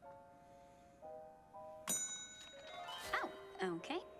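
Cartoon soundtrack: a few soft, held musical notes, then a sharp bell ding with a high ringing tail about two seconds in, followed by swooping, voice-like sound effects.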